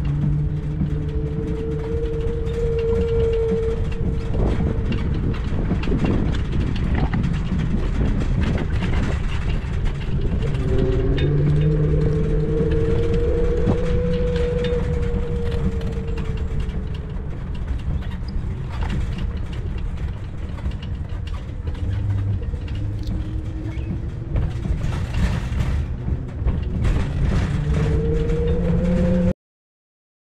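Wind and ride noise on a trike-mounted action camera while moving, a dense low rumble throughout. A low hum rises and falls three times over it, and the sound cuts off suddenly just before the end.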